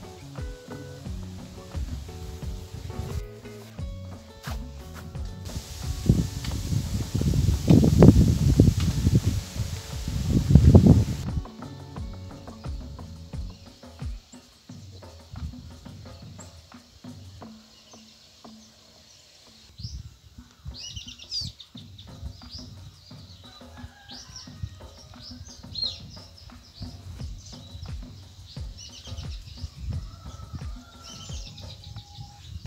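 Background music in the first half, broken about six seconds in by a loud rush of noise lasting some five seconds. From about twenty seconds in, birds chirp repeatedly in short, high calls.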